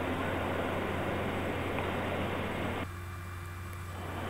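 Steady rushing hum of large-hangar background noise over a constant low drone, its upper hiss cutting off abruptly about three seconds in.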